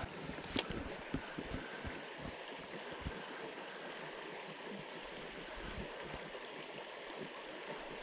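Shallow creek water running, a steady, even rush, with a few faint knocks in the first three seconds.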